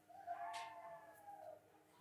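A faint, drawn-out high-pitched vocal sound from the audience, about a second and a half long, rising a little and then falling away.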